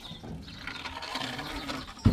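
Goats bleating with small birds chirping, a drawn-out low call in the second half.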